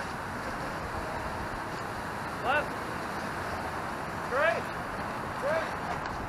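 Steady wind and street noise with three short shouted calls, each rising then falling in pitch, from people pushing a dead car by hand.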